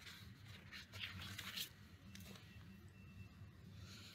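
Near silence: room tone with a low steady hum, and faint rustling in the first couple of seconds.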